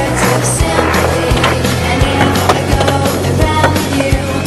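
Skateboard wheels rolling on concrete as the rider pushes and cruises, under a loud music track.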